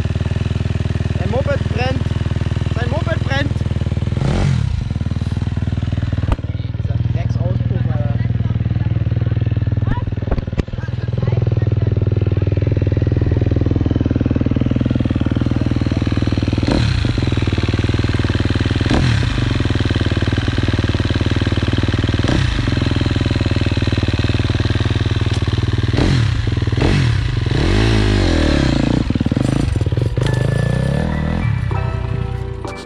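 Sidecarcross motorcycle engine running, its pitch rising and falling several times as the throttle is opened and closed.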